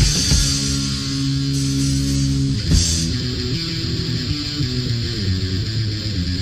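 Punk rock band recording: distorted electric guitar and bass holding chords over drums, with a cymbal crash and a chord change about three seconds in.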